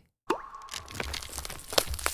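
Animated logo sound effect: a quick upward swoop into a briefly held tone, then a run of crackling clicks ending in a sharp hit near the end.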